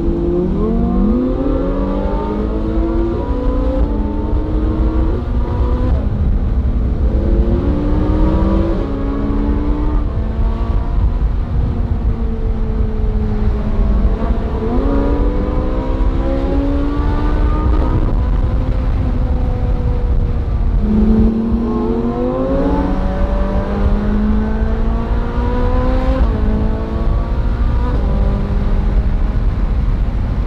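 Ferrari 458 Spider's naturally aspirated V8 accelerating hard several times, its note rising and stepping down with each quick upshift, in about four bursts. A steady low wind rumble from open-top driving runs underneath.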